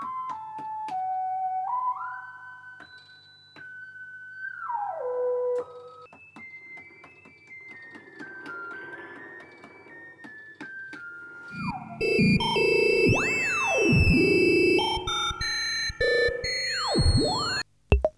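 1970s Practical Electronics DIY synthesizer triggered from a step sequencer: a single-note line stepping between pitches, with a click at each step and some notes sliding into the next. About twelve seconds in it turns louder and busier, with swooping rising-and-falling sweeps and high warbling tones.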